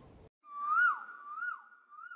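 A high whistle-like tone, held steady and dipping quickly in pitch three times about half a second apart, opening the intro of a song segment.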